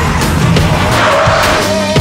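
Music playing over a van's tires skidding and squealing through a sharp turn, the skid swelling about a second in.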